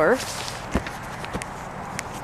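A few footsteps on a plowed road with patches of packed snow, short scuffs and knocks about half a second apart.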